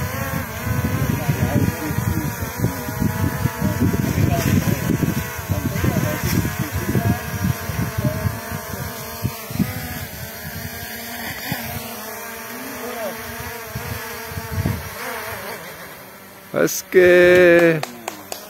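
Small quadcopter drone hovering low, its propellers giving a steady, multi-toned buzzing whine, with a gusty rumble of air on the microphone. It descends and lands on a tree stump, and the motor whine dies away a second or two before the end.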